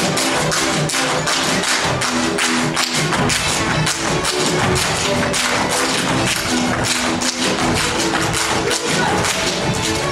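Hungarian folk string band playing, with dancers' boots stamping and striking the stage in a fast, dense run of hits over the music.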